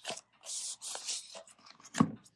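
Tarot cards being drawn from a deck and turned over by hand: a few short papery swishes and slides, with a sharper flick near the end.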